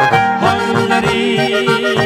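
Instrumental passage of an Oberkrainer waltz played by accordion, clarinet, trumpet, guitar and bass. About half a second in, a long held note with a wavering vibrato enters over the repeating bass-and-chord accompaniment.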